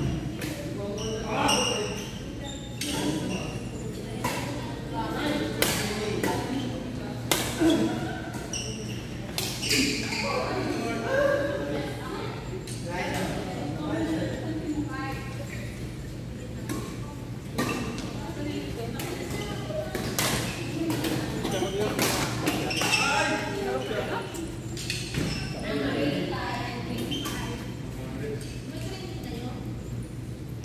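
Badminton rackets striking a shuttlecock during doubles rallies: sharp hits at irregular intervals, echoing in a large sports hall, with voices around.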